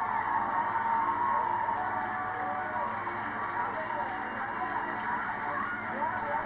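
Studio audience laughing and reacting with overlapping voices, heard through a television's speaker.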